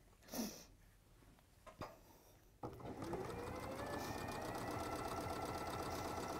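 Elna electric sewing machine starting up about two and a half seconds in, its motor whine rising quickly in pitch and then running at a steady speed as it stitches a seam through two layers of fabric. Before it starts there is only a brief soft sound and a faint click.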